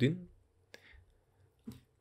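A single sharp computer mouse click about three-quarters of a second in, in an otherwise quiet pause.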